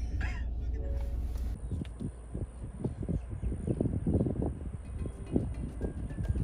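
Steady low road rumble inside a moving car's cabin, which cuts off abruptly about a second and a half in. After it come a faint steady high whine and irregular soft knocks and rustling.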